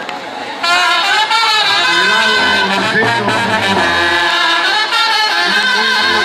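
Brass band music starts about half a second in, a horn melody over a steady low bass line.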